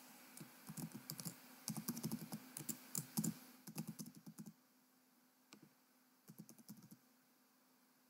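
Computer keyboard typing, quick runs of keystrokes for about four and a half seconds, then a few short scattered groups of keystrokes.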